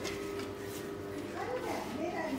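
Voices talking indistinctly, mostly in the second half, over a steady low hum.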